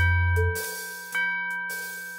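A cartoon clock chiming the hour, with two bell strikes about a second apart, each ringing out and dying away. A low held music note fades out just after the first strike.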